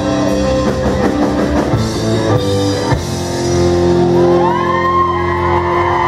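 Live rock band with electric guitars, bass, keyboards and drum kit playing an instrumental passage with no singing. About halfway through the band holds one long chord while a lead line bends and glides above it.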